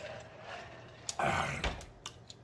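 A man drinking from a mug, then a loud, breathy open-mouthed exhale with some voice in it about a second in, as he lowers the mug after the drink.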